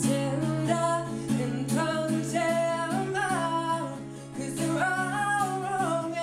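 A man singing over a strummed acoustic guitar. The loudness dips briefly about four seconds in, then he holds a long sung note.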